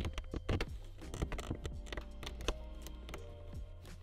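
Scattered small plastic clicks and taps as the door release cable and its clip are fitted into a VW T5's interior door handle mechanism, over quiet background music.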